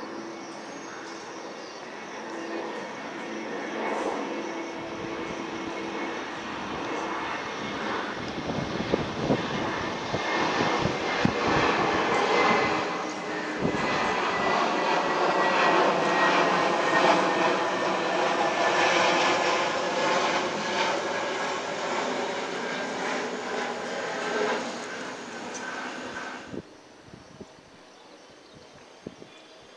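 Airbus A320neo (A320-271N, Pratt & Whitney geared turbofans) passing low overhead on approach with its gear down. A rush of jet engine noise builds to its loudest in the middle, with a thin whine that slowly falls in pitch as the aircraft goes by, then cuts off suddenly near the end.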